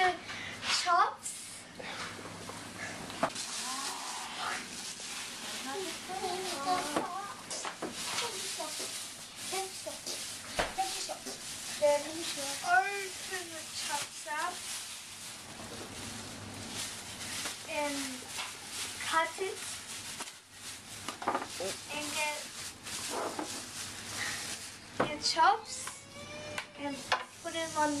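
A chop sizzling in an electric frying pan, a steady hiss with small crackles, under children's voices talking indistinctly.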